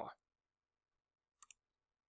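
Computer mouse clicked, two short sharp clicks close together about a second and a half in, otherwise near silence.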